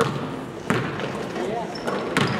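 Basketball being dribbled on a hardwood gym floor: two sharp bounces about a second apart, over faint background voices in the gym.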